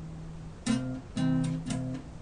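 Acoustic guitar chords strummed in a slow rhythm. A chord rings on, then new chords are struck about two-thirds of a second in, just past one second, and near the end.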